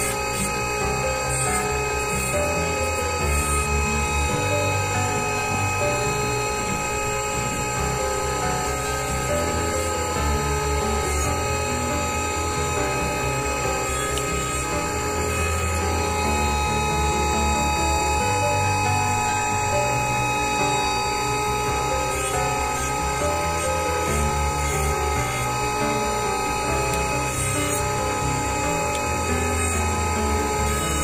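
Steady whine of a dental laboratory bench lathe spinning a bur as acrylic is trimmed from a denture, under background music with a steady beat.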